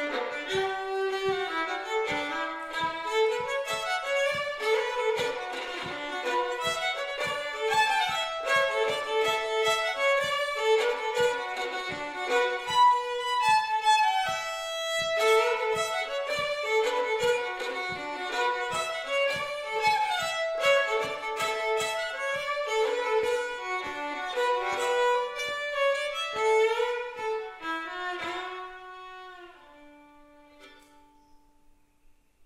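Solo fiddle playing a slowish reel in D, with a steady low tap keeping time about twice a second. Near the end the tune finishes and the last note fades away.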